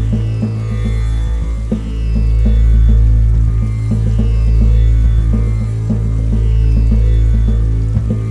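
Background music: a steady low drone under a quick, even run of plucked notes.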